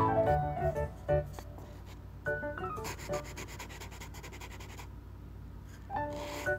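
A paper cutout makeup brush rubbing against paper in a quick run of light scratchy strokes lasting about two seconds in the middle. A few falling piano notes of background music sound at the start.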